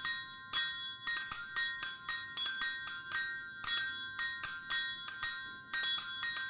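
Percussion quartet playing interlocking patterns on small hand-held bells and metal mallet percussion. The bright metallic strikes come several a second in an irregular rhythm, with pitched bell tones ringing on under them.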